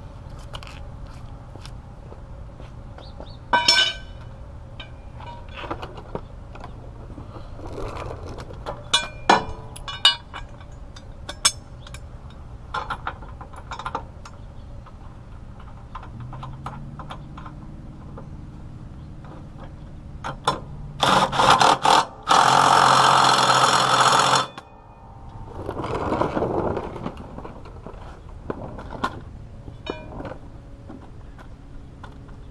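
Battery-powered impact wrench hammering on a mower blade bolt under the deck: a few short bursts about 21 seconds in, then a steady burst of about two and a half seconds, and a softer run soon after. Scattered clinks and clicks of tools and metal being handled come before it.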